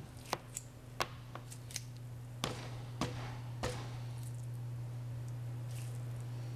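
Claw hammer striking a dry-ice-chilled hot dog on a plastic board: a series of sharp, separate taps, about eight blows at an uneven pace over the first four seconds, breaking the hot dog into pieces.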